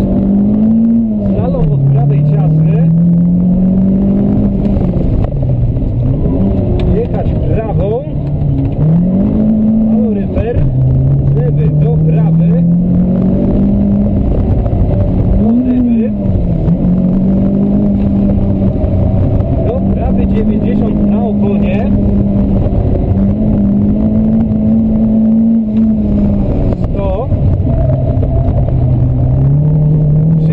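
Renault Clio Sport rally car's engine heard from inside the cabin, driven hard. Its pitch climbs and drops again and again as it accelerates and lifts between chicanes, with a long stretch held at steady high revs about halfway through.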